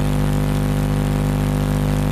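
A steady engine-like hum made of many fixed tones, unchanging throughout.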